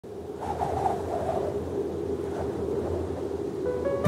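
Instrumental introduction to a Sinhala Christian hymn: a soft, hazy ambient swell. Clear sustained notes come in near the end, leading into the melody.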